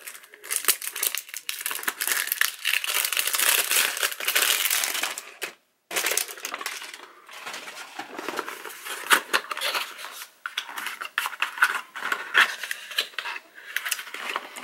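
Cellophane shrink-wrap crinkling and tearing as it is pulled off a perfume box, dense for the first half, then sparser crinkles and clicks as the cardboard box is opened.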